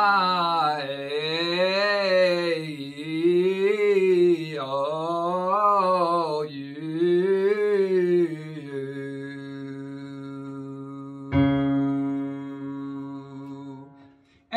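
A man sings a quick up-and-down scale on 'ah' five times in a row over a held electronic-keyboard chord, as a singer's breathing exercise. His voice stops after about eight seconds while the chord rings on, and a new chord is struck near the end.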